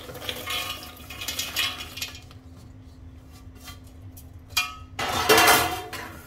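Roasted dry fruits (fox nuts, cashews and almonds) poured from a steel plate into a stainless-steel mixer-grinder jar, rattling and clinking against the ringing steel. A few small clicks follow, then a louder burst of clattering about five seconds in.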